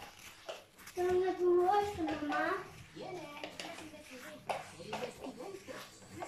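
A young child's voice talking, high-pitched, with a few light knocks in between.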